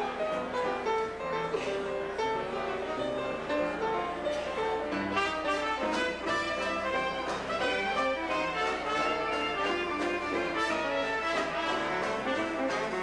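Traditional jazz band playing live, with trumpet, clarinet, trombone and tuba sounding together in ensemble.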